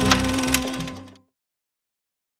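The end of a sung song with its accompaniment: a final held note with two sharp knocks in it, fading out about a second in.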